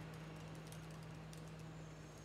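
Faint, irregular key clicks of someone typing on a computer keyboard, over a steady low hum.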